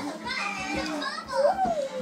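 A young child's wordless vocalizing with other voices in the room, including a rising-then-falling call about a second and a half in.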